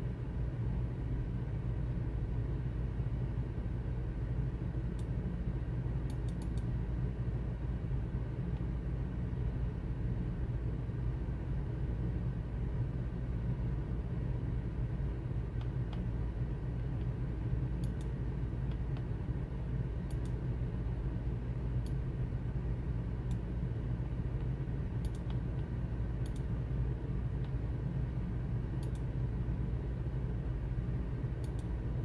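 A steady low hum with faint computer mouse clicks scattered irregularly over it, now and then two or three in quick succession.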